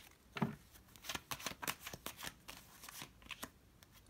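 Tarot cards being handled: cards slid off the deck and laid down on the hard table top, giving a string of soft, irregular card clicks and slides.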